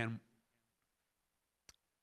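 A man's spoken word trailing off, then near silence broken by a single short click shortly before he speaks again.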